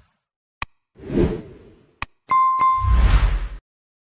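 Sound effects of an animated like-and-subscribe button: a click and a swoosh, another click, then two quick bell dings followed by a last swoosh.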